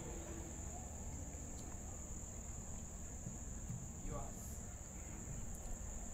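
Crickets trilling, a steady, high-pitched, faint drone over a low background rumble.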